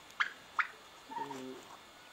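A bird calling: two short, quick chirps rising in pitch, about half a second apart, followed by a brief spoken 'e'.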